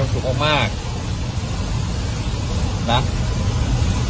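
Steady low rumble of a car heard from inside the cabin, under a few short spoken words.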